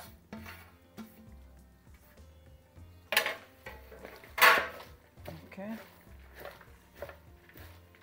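A thin metal tray clattering twice against a granite counter, about three and four and a half seconds in, the second the louder and ringing briefly. Before it comes soft scraping of chopped herbs off the tray, and after it hands tossing chopped vegetables in a plastic bowl.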